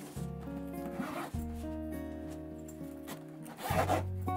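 Background music, with a handbag's zipper pulled briefly near the end, the loudest sound here, and a shorter rubbing of the bag's material about a second in.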